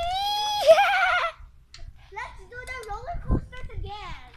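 A girl's long, high cry held for about a second, wavering at the end, followed by faint broken chatter and a single low thump near the end.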